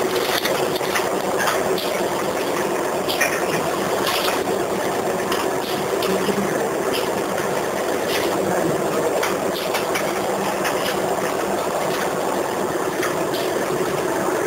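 Chips pouch packing machine running steadily, a continuous mechanical hum with sharp clicks at uneven intervals.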